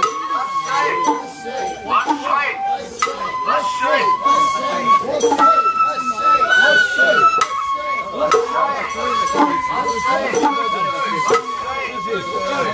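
Sawara-bayashi festival music: a bamboo shinobue flute plays a held melody line that climbs higher in the middle and falls back, with sharp percussion strikes keeping time throughout.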